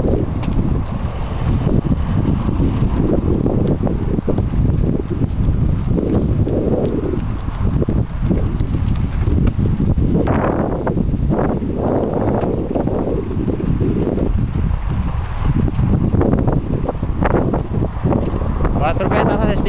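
Heavy, gusty wind noise buffeting the microphone, rumbling low and fairly steady throughout.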